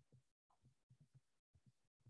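Near silence on a video-call line, with faint, short low thuds at irregular intervals and brief dead-silent dropouts.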